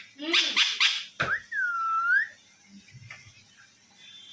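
Pet Alexandrine parakeet calling: a few quick, high-pitched chattering calls, then one clear whistle that dips and rises again.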